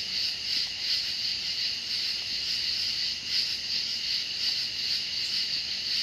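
A steady, high-pitched chorus of night insects, chirring with a slight regular pulse.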